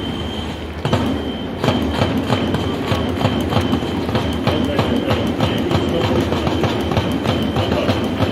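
Cheering-section taiko drums and snare drum beating a fast, steady rhythm of about four beats a second, under a held high note from an electronic whistle. The drumming picks up again after a brief lull about a second in.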